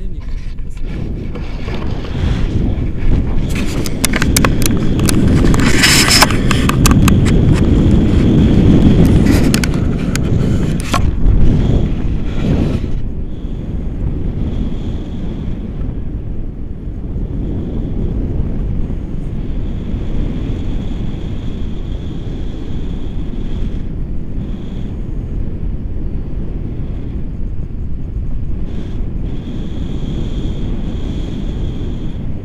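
Airflow from a paraglider's flight rushing over an action camera's microphone, loud and gusty with irregular buffeting crackles for several seconds early on, then steadier and somewhat quieter.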